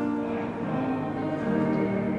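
A choir singing a hymn, with long held notes in several voices.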